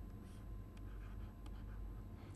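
Faint scratching and light taps of a pen stylus writing on a tablet, over a low steady hum.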